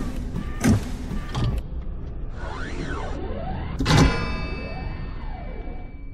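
Sound-effect intro: heavy mechanical thuds about every three-quarters of a second, then sweeping whooshes that rise and fall, and about four seconds in one loud hit with a long ringing tail that fades out.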